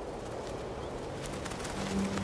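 Wind blowing steadily, slowly growing louder, with a bird cooing over it; low sustained music notes come in just before the end.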